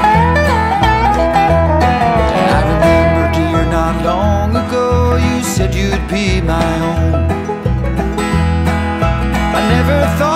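Bluegrass string band playing an instrumental break, with a lead line of sliding notes over a steady bass beat and rhythm.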